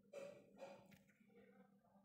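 Near silence: a woman's faint breath in a pause between spoken sentences, heard near the start.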